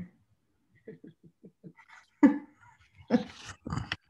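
A woman laughing: a quick run of soft chuckles, then a few louder, breathy bursts of laughter.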